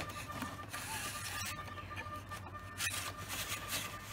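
Faint handling noise, with a few small clicks and some rubbing, as a thin wire hinge pin is pushed through the hinge of a model aircraft elevator.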